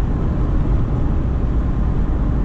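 Steady road noise of a car driving at speed, tyres and engine heard as an even, deep rumble from inside the car.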